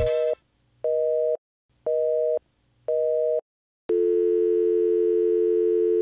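Telephone busy signal: a two-note beep pulsing on and off about once a second, then a steady two-note dial tone from about four seconds in.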